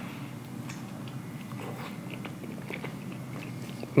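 A person biting into an asada taco and chewing it with closed-mouth chewing sounds and small, scattered faint crunches.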